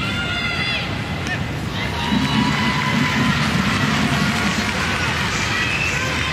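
Stadium crowd noise: a steady hubbub of spectators, with voices calling out above it, a high call in the first second and lower chanting or shouting from about two seconds in.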